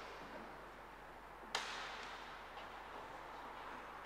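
A single sharp knock about one and a half seconds in, echoing for about a second in a large, reverberant church, over faint steady room hiss.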